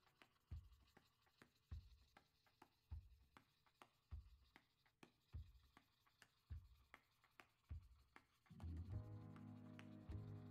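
Faint scratching of a colored charcoal pencil on paper, worked in short repeated strokes about once a second. Background music comes back near the end.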